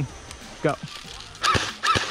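Well D98 Thompson M1A1 airsoft electric gun (AEG) firing two single shots about half a second apart, each a sharp, short report, in the second half.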